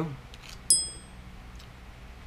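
A single sharp, high metallic ping with a short ring, about two-thirds of a second in, as a small metal screw from an aluminium GoPro mount comes loose. A couple of faint clicks from handling the parts come just before it.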